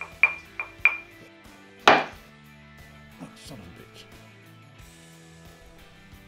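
Knuckle or fingertip taps on a hard, dense block of coromandel wood: three light, quick taps with a short high ring in the first second, then one louder knock about two seconds in. Faint background guitar music runs under it.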